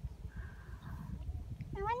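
Wind buffeting the phone's microphone, a low rumble, with a child's voice starting just before the end.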